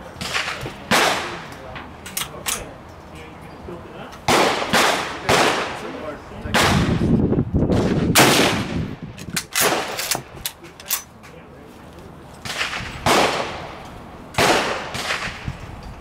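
Rifle shots on an outdoor firing line, over a dozen sharp cracks at irregular intervals from more than one gun, each trailing off in a short echo.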